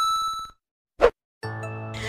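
A bell-like ding sound effect rings and fades out within the first half second, followed about a second in by a short pop. Faint background music comes in near the end.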